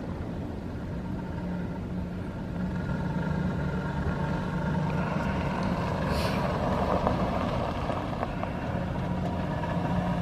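The 2008 GMC Sierra 1500's 5.3-litre V8 gas engine runs steadily and grows louder about three seconds in.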